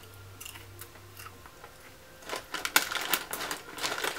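Plastic snack bag of kettle corn crinkling and crackling in irregular clicks as it is handled, starting about halfway in.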